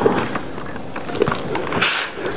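Steam iron pressing wool trousers on an ironing board: the iron and cloth shift against the board's cover with a few soft knocks, and there is a short hiss near the end.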